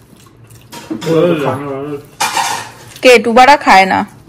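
Voices at a meal table, with dishes and steel serving spoons clinking and scraping, and a short hiss-like rustle about halfway through.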